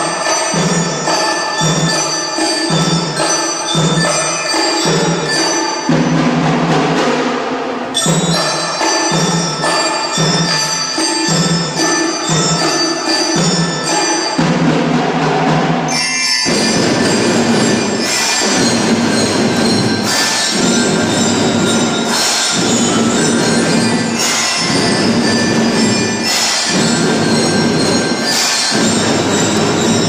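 Children's drum band playing a tune on xylophone-type mallet instruments with percussion keeping time. About sixteen seconds in, the sound turns fuller and denser, with a regular beat about once a second.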